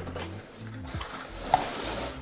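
Cardboard box being opened by hand: the lid scrapes as it is lifted off, with a short knock about one and a half seconds in. Soft background music plays under it.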